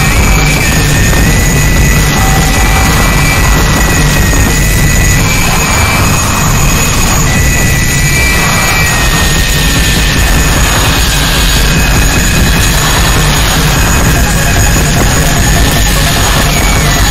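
Harsh noise music: a loud, unbroken wall of noise with a thin high whistle running through it that wavers and slowly sinks in pitch.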